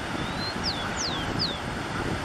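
Rufous-collared sparrow (tico-tico) singing: a thin rising whistle, then three quick down-slurred whistles, over a steady rush of wind noise.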